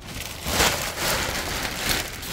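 Black plastic trash bag crinkling and rustling as it is pulled off a row of plastic water jugs, growing louder about half a second in.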